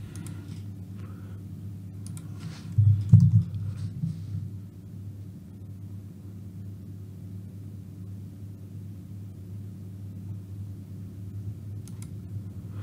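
Soft computer-mouse clicks as wave labels are placed on a chart, over a steady low hum, with one louder low thump about three seconds in.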